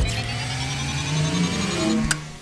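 Logo-reveal sound effect: a synthetic rising swell that starts abruptly, with a hiss under several tones that slowly glide upward.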